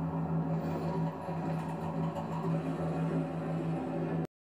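Documentary background music heard through a television speaker: a low drone note held steady, with faint higher tones above it.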